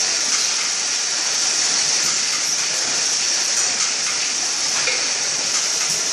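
Steady hissing noise of packing-line machinery, with belt conveyors running through a checkweigher.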